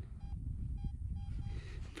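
Garrett AT-series metal detector giving several short beeps at one pitch as its coil is swept over a buried target. It is a repeatable, clean signal that the detectorist calls a little bit special, and he later reads it as dime-sized brass.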